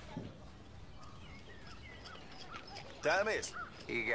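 Film soundtrack of a rural outdoor scene: a low steady background with small bird chirps, then about three seconds in a few loud, harsh, arching calls like crows cawing, followed by a brief line of dialogue at the very end.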